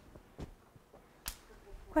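Two short, sharp clicks about a second apart.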